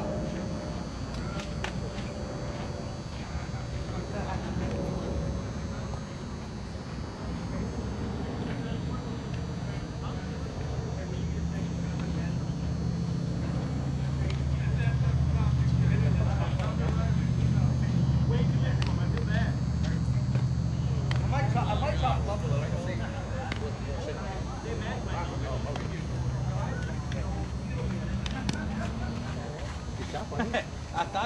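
Indistinct voices of softball players talking across the field, over a low steady hum that swells in the middle and then eases.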